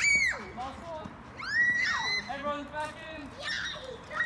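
Children shouting and shrieking: several high calls that rise and fall in pitch, a loud one right at the start and another about a second and a half in, with shorter shouts after.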